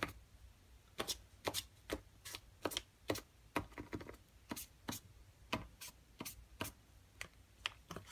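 Posca paint pen's tip being cleaned: a run of sharp, irregular clicks and taps, about three or four a second, starting about a second in.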